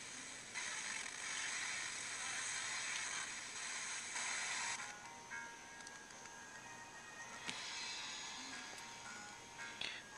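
FM broadcast radio received by a USB TV-tuner dongle and the SDR Touch app, playing through the phone's speaker. For the first few seconds it hisses with static while being tuned between stations; then, about five seconds in, a station comes in with music.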